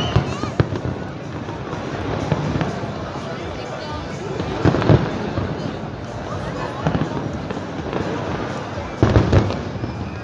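Aerial fireworks exploding overhead, a steady crackle broken by sharp bangs, the loudest about five seconds in and a quick cluster near the end, over the chatter of a watching crowd.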